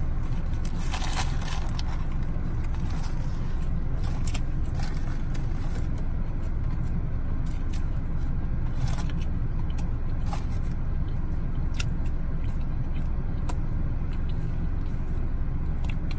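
Biting into and chewing a crispy Popeyes spicy fried chicken sandwich, with scattered crunches and crinkles of its paper wrapper, over a steady low rumble in the car cabin.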